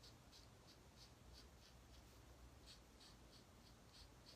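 Faint scratching of a marker tip on card stock as a stamped image is coloured in, in short repeated strokes about three a second, with a brief pause in the middle.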